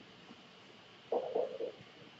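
Quiet classroom room tone, then a little over a second in a brief muffled murmur lasting about half a second.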